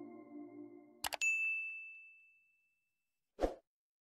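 End-screen sound effects: a held music chord fades out, then a quick double mouse click about a second in is followed by a bright ding that rings out over about two seconds. A short low thud comes near the end.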